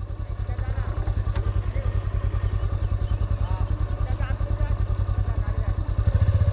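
Motorcycle engine running at low speed with an even, fast pulse as the bike is ridden slowly over a rough dirt track.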